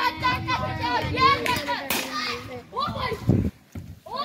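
Children's and men's voices calling and shouting over one another during a street game, with one sharp knock about two seconds in.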